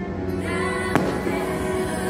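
The show's music playing in sustained tones, with a single sharp firework bang about a second in.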